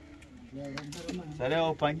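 Men talking in a small outdoor group, with overlapping voices that get louder in the second half.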